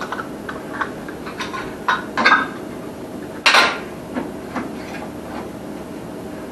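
Glass jars and metal lids being handled on a counter: scattered light clicks and knocks, with a sharper clink about three and a half seconds in.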